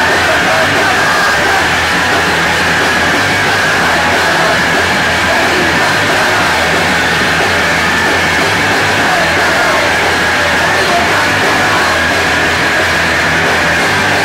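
Live punk rock band playing a fast, loud song with distorted guitar and drums, recorded on a camera microphone that flattens everything into one steady, saturated wall of sound.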